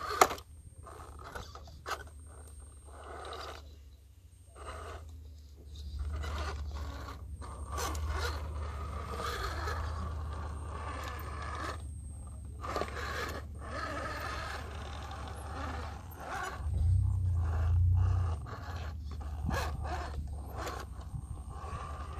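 RC rock crawler's brushless motor and gear drivetrain whining in stop-and-go spurts as it crawls over rock, with the tyres scraping and knocking on the stone. A steady low rumble underneath swells briefly about 17 seconds in.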